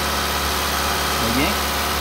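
Mitsubishi Outlander engine idling steadily while it draws catalytic-converter cleaner through a thin line into the intake manifold.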